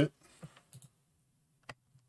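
A few faint computer mouse clicks, the clearest one near the end.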